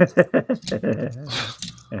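Laughter in quick short pulses, then more chuckling voice, with a few sharp clicks of coins being handled.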